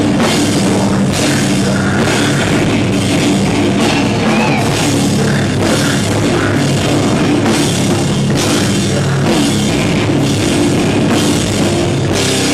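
Live hardcore metal band playing at full volume: distorted electric guitars and bass over a pounding drum kit, dense and loud throughout.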